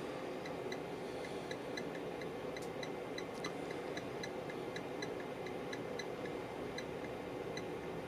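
Steady low hum with light, even ticking about four times a second, from an amplifier dyno bench while a compact mono car amplifier is driven with a 40 Hz test signal into a 4-ohm load.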